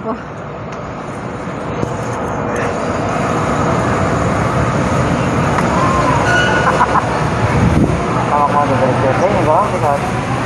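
Street traffic noise from passing vehicles: a dense, steady noise that grows louder over the first few seconds, with brief voices in the second half.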